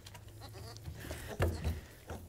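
A lamb bleating once, briefly and faintly, about one and a half seconds in, over a low hum.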